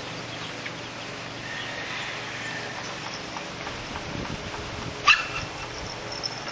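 A pug giving a single short, sharp bark about five seconds in, over a steady background hiss.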